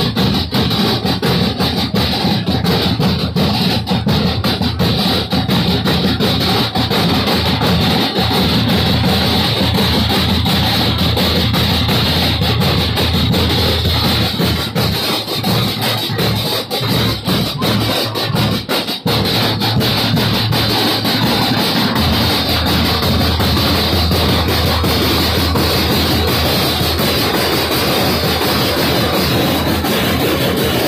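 Parade drum corps of snare drums and bass drums playing a continuous, dense marching beat.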